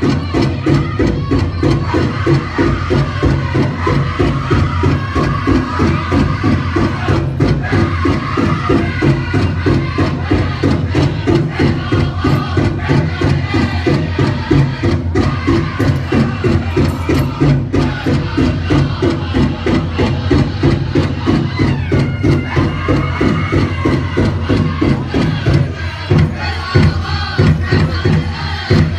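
Powwow drum group playing a song: a large drum struck by several drummers in a fast, steady beat, with the singers chanting over it.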